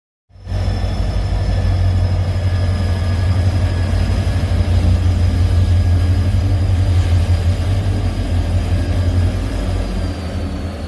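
Korail diesel-electric locomotive's engine running as it moves slowly past: a loud, steady deep rumble with a faint high whine above it. The sound starts abruptly just after the beginning.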